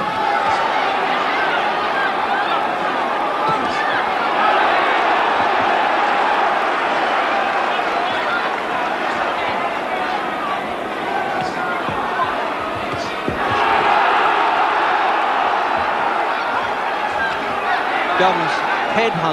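Boxing crowd shouting and cheering, a dense mass of many voices, growing louder about thirteen seconds in.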